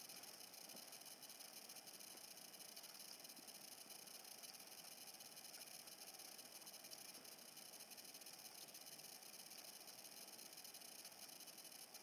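Near silence: a faint, steady hiss with nothing else heard.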